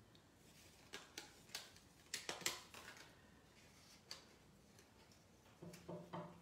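A large bird tapping its beak on window glass: a run of sharp, light taps in the first few seconds, with one more a little later, against near silence.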